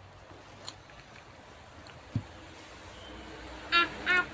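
Quiet room tone with a few faint clicks. Near the end, a child's voice rises briefly in a short high-pitched call.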